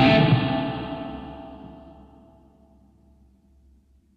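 Electric guitar's last note ringing out with reverb, fading away to silence over about two and a half seconds.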